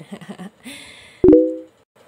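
A short electronic chime with a sharp click at its start, about a second in, the sound effect of an animated subscribe-and-bell button; a brief hiss comes just before it.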